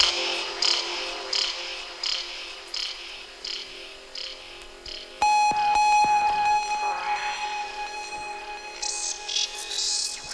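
Electronic music in a stripped-back breakdown, the bass and drums dropped out: a soft high tick repeats about every 0.7 s, and about five seconds in a single held tone comes in.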